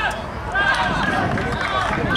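Several men's voices shouting and calling out over one another during play on a small-sided football pitch, with scattered short sharp knocks.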